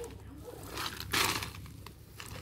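Thin plastic bag rustling and crinkling as it is grabbed and twisted shut, loudest for about half a second in the middle.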